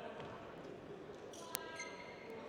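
Quiet sports-hall room tone between badminton rallies, broken by a single sharp tap about one and a half seconds in, followed by a brief faint ringing tone.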